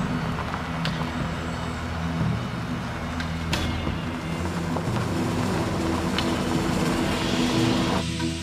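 An old truck's engine running steadily as it drives along a dirt road, with background music.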